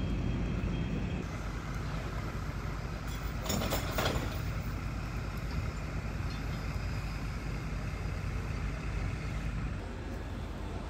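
Steady low rumble of heavy diesel machinery running on a construction site, with a brief hiss about three and a half seconds in.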